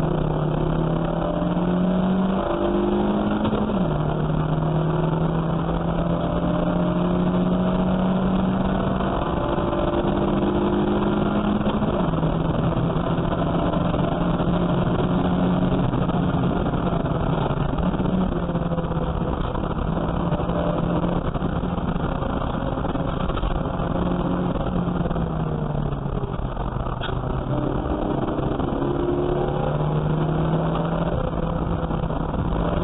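Saloon race car's engine heard from inside the cabin under racing load. Its pitch climbs and drops with the throttle and gear changes, with a sharp drop about four seconds in, another about twelve seconds in, and a slower fall in revs near the end as it slows for a corner.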